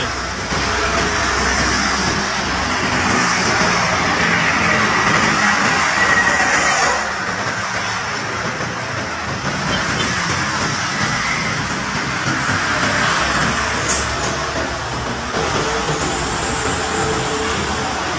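Road traffic noise: vehicles passing on a busy highway, a steady rushing sound that eases slightly about seven seconds in.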